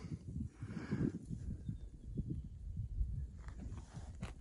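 Quiet outdoor background: a faint, irregular low rumble with a few soft scuffs, typical of a hand-held camera being moved and of light footsteps on dry dirt.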